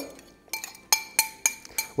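Spatula scraping and tapping out the last of the green egg mixture from a small glass bowl, giving a quick run of about six glass clinks with brief ringing, starting about half a second in.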